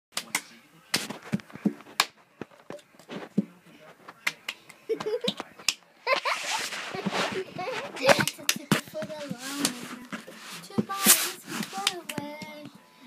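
Cup song: hand claps and a cup slapped and tapped on a carpeted floor, sharp hits in an uneven rhythm. About six seconds in they give way to a voice and scattered claps.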